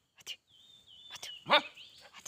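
A dog gives one short, sharp bark about one and a half seconds in, the loudest sound here. Before it come a few faint clicks and a thin, high, steady tone.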